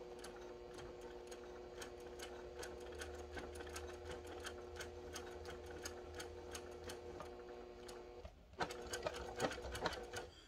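Brother sewing machine stitching through many thick layers of fabric: a steady motor hum under a fast, even run of needle strokes. About eight seconds in the motor pauses briefly, then the strokes come louder and uneven, where the machine struggles to stitch through the bulk.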